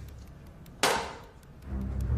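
A single sudden sharp hit about a second in, dying away within half a second, over low film background music.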